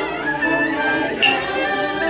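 A group of voices chanting a ritual prayer in steady pitched phrases, with one sharp percussive strike and a short ringing tone about a second in.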